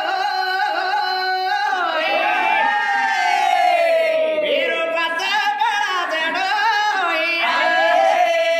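A voice singing a folk song through a public-address microphone and loudspeaker, with long held notes that slide and waver in pitch, sometimes overlapped by a second voice, ending on a long steady note.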